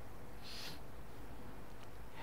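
A short, breathy sniff or intake of breath by a man, about half a second in, over a steady low room hum.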